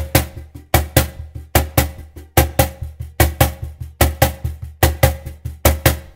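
Cajon played with the hands in a samba-reggae groove, a caixa-style pattern on the afterbeat: a steady run of slaps on the wooden front, with a louder stroke about every 0.8 s and softer strokes between.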